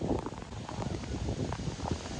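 Steady hiss of wind and rain on a beach, with wind buffeting the phone's microphone.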